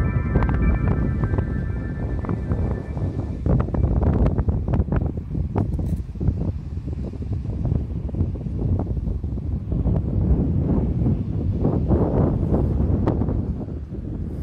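Wind buffeting the microphone: a loud, gusty rumble that rises and falls unevenly. The last held notes of a chiming tune fade out in the first two seconds.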